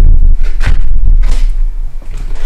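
A few short knocks and creaks over a low rumble.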